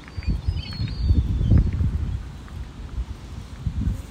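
Wind buffeting the microphone in irregular low gusts, strongest about a second and a half in, with a few faint high bird calls in the first second or so.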